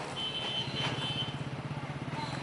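Street traffic: a small engine running steadily close by, with a high, steady beep-like tone sounding for about a second near the start and a single click around the middle.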